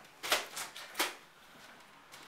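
Push-bar exit door being shoved open: two sharp clacks about two-thirds of a second apart, then quiet room sound.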